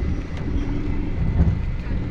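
Car driving on an unpaved road, heard from inside the cabin: a steady low rumble of engine, tyres and wind.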